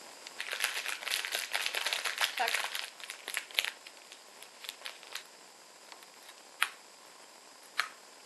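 Small clear plastic sweet bag crinkling as it is handled, a dense run of crackles for about three seconds, then a few scattered crackles and two sharp clicks near the end.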